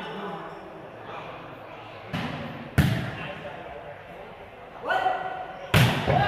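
A ball struck hard in a barefoot net game (foot volleyball): a thud about two seconds in, a sharp smack just before three seconds, and the loudest smack near the end, each ringing in a large hall, over spectators' chatter and a brief shout.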